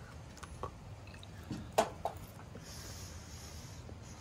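A person chewing a mouthful of pizza close to the microphone: faint soft mouth sounds with a few small clicks, one sharper click a little under two seconds in.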